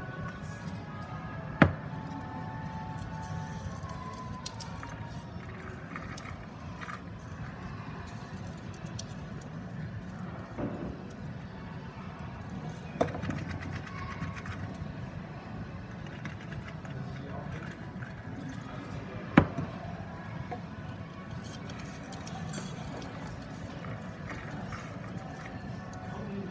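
Faint steady background of music and voices, broken by three sharp knocks, the last the loudest: a glass bottle tapped on the countertop to settle the layered bath salts and herbs poured into it.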